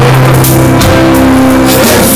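Live rock band playing loud, with bass guitar, drum kit and keyboards.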